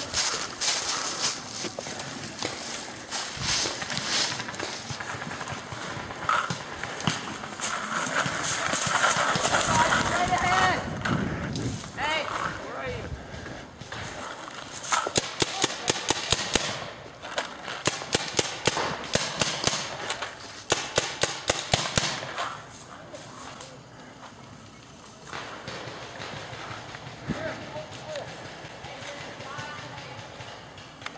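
Paintball markers firing in rapid strings of sharp pops, about five a second, through the middle of the clip, amid footsteps crunching through leaf litter and voices.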